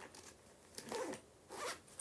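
A zipper pulled in two short strokes, about a second in and again near the end.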